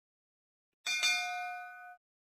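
A single bell-like notification ding sound effect, a clear ringing chime of several tones, starting a little under a second in and ringing for about a second.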